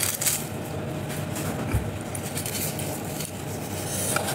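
Light clinks and knocks of tableware being handled, with one soft low thump a little before the middle, over a steady background hum.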